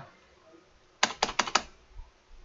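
A quick run of about five computer keyboard keystrokes, starting about a second in.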